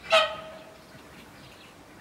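A single short, nasal animal call right at the start, with a sharp onset that settles into a held tone fading out within about a second.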